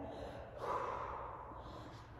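A woman breathing during knee-to-elbow crunches, with one audible breath about half a second in.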